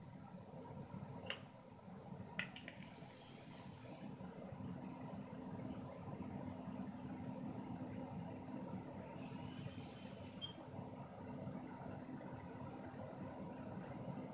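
Faint vaping sounds from an electronic cigarette with a dripping atomizer: two sharp clicks early on, then short, airy high-pitched hisses about three seconds and ten seconds in as air is drawn through it, over a steady low hum.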